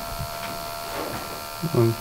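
Portable gas analyzer giving a steady electric buzz from its sampling pump, drawing air at a wooden block that was soaked with petrol and burned. The test looks for traces of a flammable liquid. A brief voice sound comes near the end.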